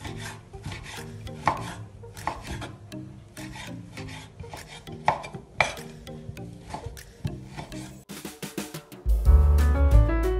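Kitchen knife dicing sheep tail fat on a wooden cutting board: irregular knocks of the blade against the board, over soft background music. About nine seconds in, loud piano music comes in.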